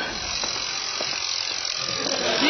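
Mechanical twin-bell alarm clock ringing, a steady, rapid high-pitched metallic rattle of its hammer on the bells.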